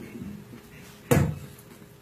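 A single sharp thump with a deep low end and a brief tail about a second in, over faint room murmur.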